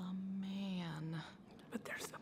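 Speech only: a woman's voice drawing out a single word, "man", for about a second.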